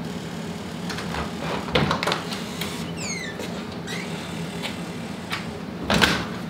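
A door being opened and shut, with scattered knocks and clicks and a short falling squeak about three seconds in, over a steady low room hum.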